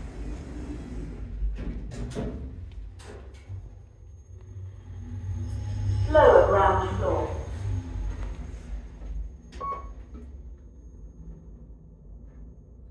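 KONE MonoSpace DX lift: the car doors slide shut with a few clicks, then the car travels down with a steady low rumble from its gearless EcoDisc drive. About six seconds in, the lift's recorded female voice gives a short announcement, and a brief tone sounds near the end.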